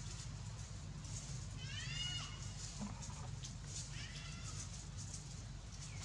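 Young long-tailed macaque crying: two high-pitched, arching, whimpering calls, one about two seconds in and a shorter one about four seconds in.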